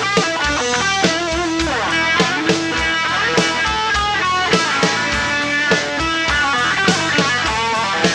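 A rock band playing live, an instrumental opening: electric guitars over drums with a steady beat.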